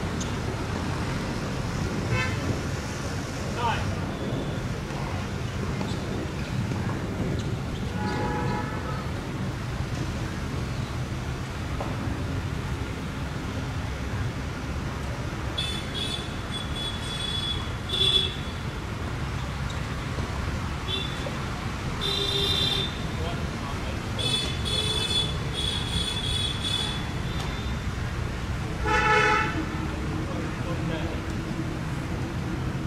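Road traffic: a steady low rumble with several short, high-pitched vehicle horn honks bunched in the second half.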